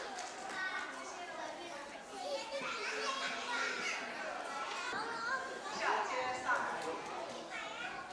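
Many children's voices chattering and calling out at once in a large hall.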